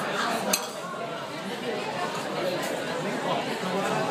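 Background chatter of diners in a busy restaurant dining room, with one sharp clink of tableware about half a second in.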